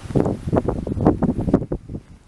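Strong wind buffeting the camera microphone in irregular, rumbling gusts that die down near the end.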